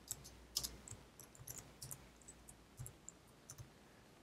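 Faint typing on a computer keyboard: a dozen or so soft keystroke clicks at an irregular pace.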